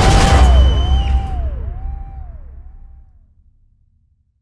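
Closing hit of the trailer's score and sound design, cutting off about a second in. A tone that swells up and falls away repeats in fading echoes about every two-thirds of a second and dies to silence.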